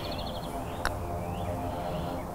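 A single light click of a putter striking a golf ball, just under a second in, with faint bird chirps behind it.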